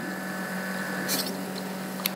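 Steady background hiss from the recording with a low electrical hum under it, and a short burst of higher hiss about a second in.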